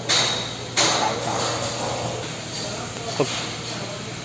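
Compressed air hissing from the air-driven hydraulic pump of a flange bolt-tensioning rig, surging at the start and again just under a second in, over a steady low hum. A short metallic ping a little after three seconds.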